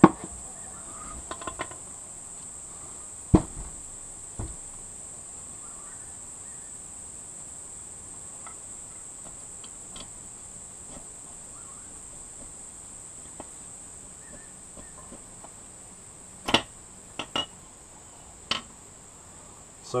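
Scattered sharp metal knocks and clunks as a stripped outboard engine block is tipped onto its side on a workbench and a piston is slid out of its bore: one at the start, two a few seconds in, and a cluster near the end. Under them runs a steady high-pitched drone of crickets.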